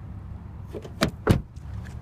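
Two sharp clicks a quarter second apart from a 2015 Lexus NX car door's exterior handle and latch as the handle is pulled and let go.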